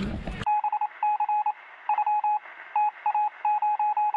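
Electronic beep sound effect: a run of beeps at one high pitch, short and longer ones in uneven groups, like Morse code, replacing the speaker's answer.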